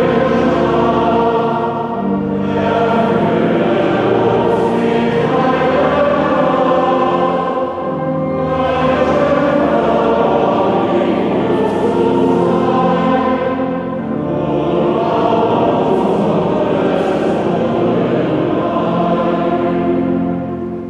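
Many voices singing a church hymn together in long phrases, with short breaks between the lines.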